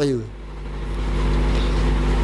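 A man's voice trails off with a falling pitch, then a steady low hum fills the pause, growing a little louder after about half a second.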